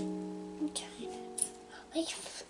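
Background acoustic guitar music, plucked chords ringing out and fading, with a new chord about a second in. A few short scratchy taps of a plastic chisel on a soft plaster block come through over it.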